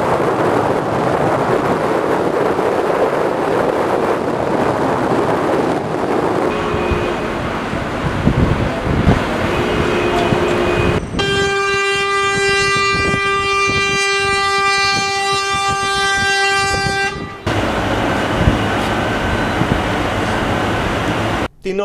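A steady outdoor rushing noise, then short two-note horn blasts about seven and ten seconds in, then one long horn blast held for about six seconds, the loudest sound here. The horn is most likely a lorry's air horn at the port.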